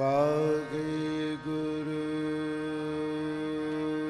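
Kirtan singing: a male voice sets in suddenly and holds a long note that slides at its start, over steady harmonium accompaniment.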